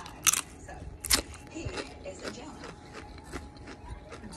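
Crunchy bites into a Doritos tortilla chip: two sharp crunches about a second apart, then quieter chewing crunches.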